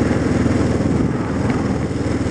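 Motorcycle engine running steadily while the bike is ridden along the road, its low pulsing note over a constant rush of noise.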